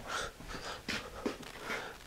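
Quiet tool-handling sounds: a hammer being picked up and a steel centre punch set against a steel pipe on a workbench, with a couple of faint light knocks about a second in.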